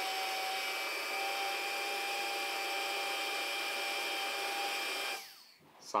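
Tyco HO-scale slot car's small electric motor running at speed on a powered track, a steady high whine that winds down with falling pitch about five seconds in as the power is cut. Its commutator and shoes are freshly cleaned and its armature bearing just oiled, and it sounds good.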